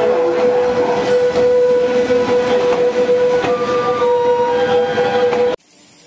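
Passenger train coaches rolling past, a dense rumble with a steady high tone held over it. The sound cuts off suddenly about five and a half seconds in, leaving only a faint background.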